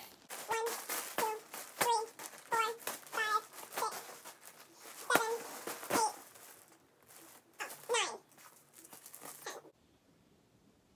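A woman's voice making a run of short, high-pitched sounds, one every two-thirds of a second or so, while a clear plastic bag crinkles in her hands. The sounds thin out after about six seconds and cut off suddenly just before the end.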